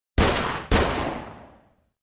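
Two gunshot sound effects about half a second apart, each a sharp bang with a long echoing tail that fades out over about a second.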